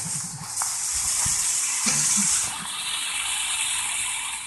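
Steady rush of water splashing off a turning 12-foot backshot waterwheel, easing a little about halfway through.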